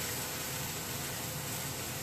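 Garlic, green onion, cherry tomatoes and broccoli frying in a hot steel pan over medium-high heat, giving a steady hiss of sizzling; the pan is running hot enough that the garlic is browning fast.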